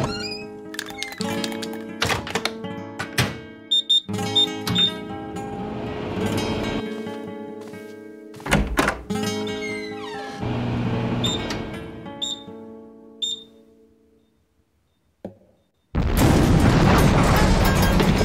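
Instrumental cartoon score with several sharp thuds and knocks through it, fading out about two-thirds of the way in. After a brief silence, a loud, dense noisy sound effect starts abruptly about two seconds before the end.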